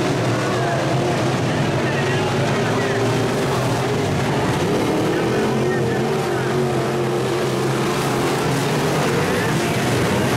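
Several dirt-track modified race cars running together around the oval, their engines making a steady, overlapping drone.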